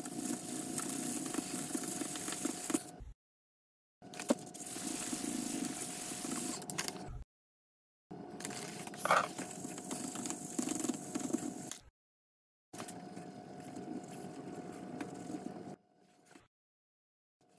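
Sandpaper rubbed by hand over a flat 6061 aluminum plate, a steady scraping, heard in four spells of about three seconds that each cut off suddenly to silence. A faint steady hum runs under the scraping.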